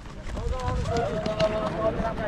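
A group of runners setting off together, many feet pounding on a dirt ground, with men's voices calling out over them.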